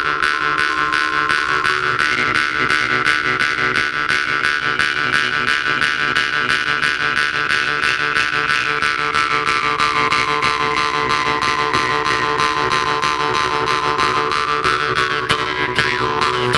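Two Jew's harps played together in a fast, even plucking rhythm over a steady drone. The overtone melody rises about two seconds in, then slides slowly back down near the end.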